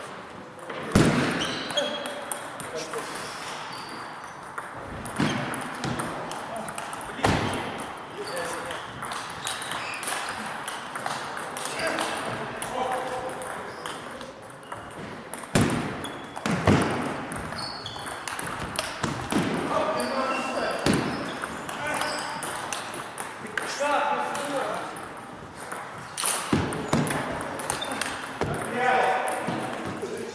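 Table tennis balls clicking off rackets and table in rallies, irregular sharp hits with a few louder ones, with voices in the hall.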